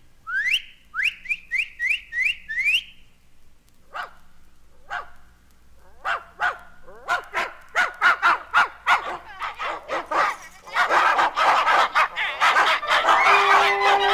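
Whistle and dog-bark effects from an orchestral novelty record: about six quick rising whistles, then short barks that come faster and faster and swell into a dense, loud clamour of barking near the end.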